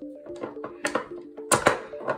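Large black hematite magnets clicking together as they are picked up and handled: a few sharp clicks, the loudest two about one and a half seconds in, over background music.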